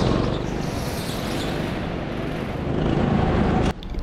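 Go-kart driving at speed, heard from its onboard camera as a steady noisy rush with a low rumble. It drops out briefly just before the end.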